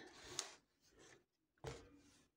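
Faint handling sounds of small clear plastic plant cups being moved off a wooden tabletop: a light click about half a second in and a soft knock shortly before the end.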